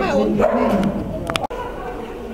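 A dog barking during an agility run, mixed with a person's called commands; the sound breaks off abruptly about one and a half seconds in.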